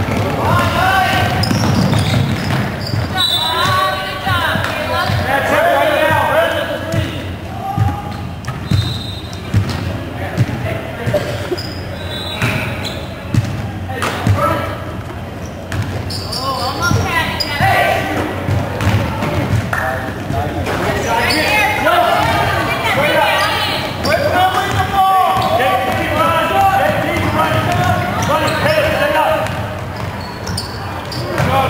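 Basketball game sounds in a gym: a ball dribbling on the hardwood floor amid indistinct shouting from players and spectators, echoing in the hall.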